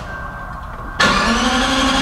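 Lexus LFA's 4.8-litre naturally aspirated V10 being started, heard at its rear exhaust: after a quiet second the starter suddenly cranks it over, and the engine catches right at the end.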